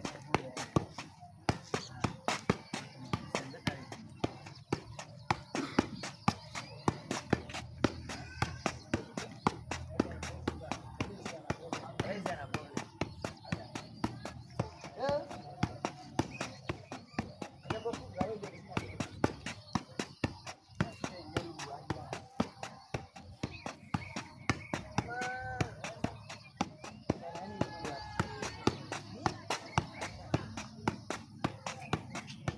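A football being juggled with the feet: a steady run of sharp thumps as the shoe strikes the ball, about two to three touches a second, over faint background voices.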